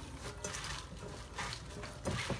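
Hands tossing lettuce, spinach and cut vegetables in a glass bowl: soft, irregular rustling of the leaves.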